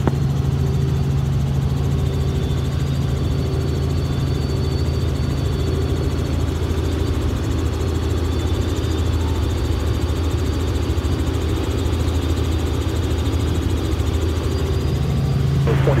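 Steady drone of a Robinson R44 Raven II helicopter in cruise, heard inside the cabin: a low, even hum from the main rotor and the Lycoming IO-540 six-cylinder piston engine, with a faint high whine above it.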